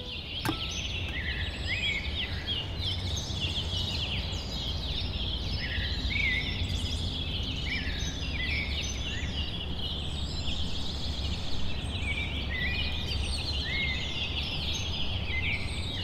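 A chorus of small birds chirping and twittering, many short overlapping calls, over a steady low hum.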